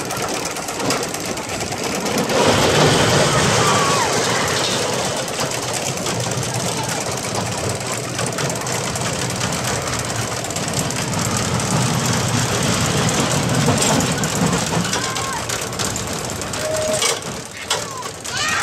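Small roller coaster train running along its track: a steady rumble and clatter that grows louder about two seconds in, with people's voices over it.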